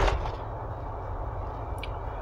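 Steady low rumble of a vehicle's engine and tyres heard from inside the cabin while driving at about 25 mph. It opens on the end of a brief loud rush of noise and has one short sharp click near the end.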